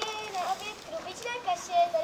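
High-pitched children's voices talking.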